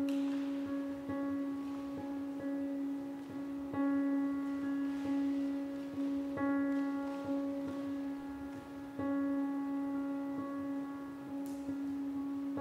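Grand piano playing soft, slow repeated notes over one steady held tone.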